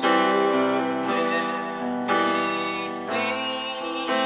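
Electronic keyboard playing piano-voiced chords in a wordless passage. A new chord is struck about once a second and left to ring and fade.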